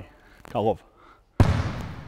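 A basketball landing once on the court with a sudden heavy thud that rings out and dies away in a large, empty arena, preceded by a brief voice.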